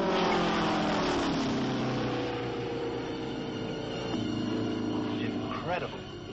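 Piston engine of a World War II propeller fighter plane passing low overhead. Its pitch drops as it goes by, and the drone then slowly fades.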